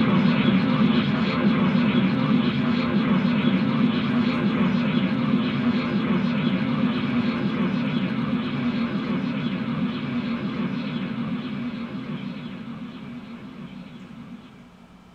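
Harsh noise music from a live electronics-and-amplifier setup: a dense, unbroken wall of distorted noise with a strong low drone underneath. It fades out over the last few seconds.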